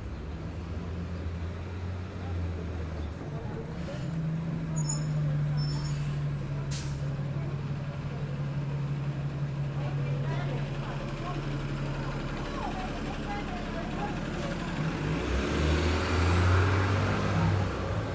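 A city bus engine idling at the curb close by. Its low hum steps up in pitch about four seconds in and falls back later. A short air hiss comes about seven seconds in, and traffic noise swells near the end.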